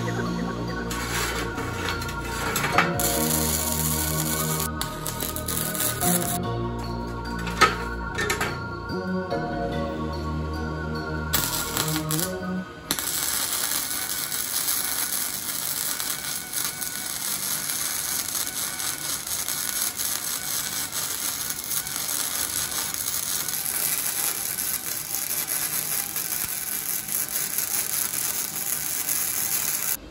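Background music with a beat for about the first thirteen seconds, then a Weldpro MIG 155 GSV welder crackling steadily as it runs a bead joining rebar handles to a steel plow disc.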